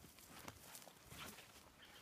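Near silence, with a few faint footsteps on dry, stubbly ground.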